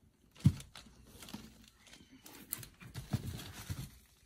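A few dull thumps and knocks, the sharpest about half a second in and two more near the end, with faint rustling: handling noise as a child moves about inside a parked car's cabin with plastic-covered seats.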